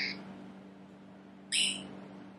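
Necrophonic ghost-box app playing through a phone's speaker: two short, high, chirpy bursts of chopped sound, one at the start and one about one and a half seconds in, over a steady low hum. The second burst is taken for the word "me".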